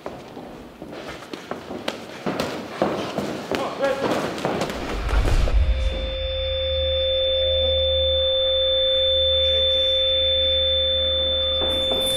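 Boxing-gym sound design: a run of sharp, irregular punching impacts for about five seconds, then a steady low drone with two high, pure ringing tones, like ringing ears, held until it cuts off abruptly near the end.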